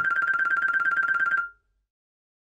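Outro jingle sound effect: a high, rapidly warbling 'boing'-like tone that holds steady, then cuts off suddenly about a second and a half in.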